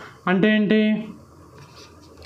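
A dry-erase marker scratching on a whiteboard as it writes. A short spoken word in a man's voice comes near the start and is the loudest sound; the writing continues faintly after it.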